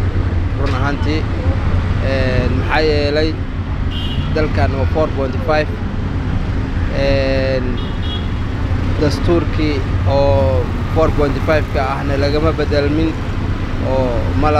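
A man talking steadily in Somali into a handheld microphone, over a constant low rumble of street traffic.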